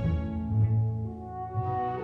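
Symphony orchestra playing a passage of a ballet score: violins above, with low bass notes that change several times.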